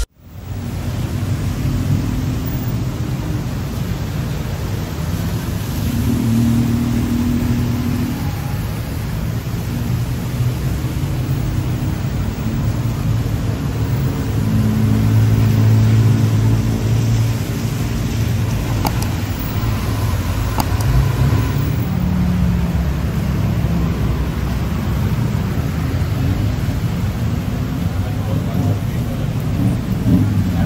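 Night-time city street traffic: motorbikes, tuk-tuks and cars running past on a wet road, with people's voices in the background. The traffic swells about halfway through as vehicles pass close by.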